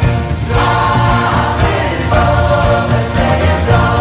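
Background music: a choir singing a Christmas carol.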